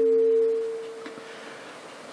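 Public-address microphone feedback: a steady single ringing tone that fades away about a second in, leaving faint room hiss.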